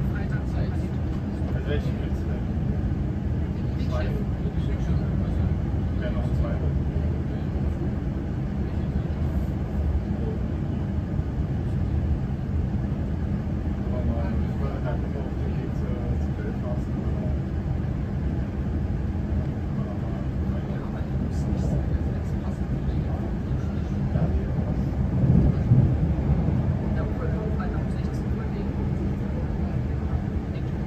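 Steady low rumble of an electric passenger train in motion, heard from inside the carriage, with a brief louder swell about 25 seconds in.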